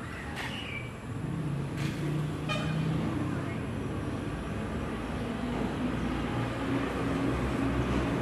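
Road traffic, with a vehicle horn sounding in the first few seconds.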